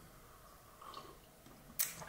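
Quiet sipping of hot chai from mugs: a faint sip about a second in and a short, sharper slurp near the end.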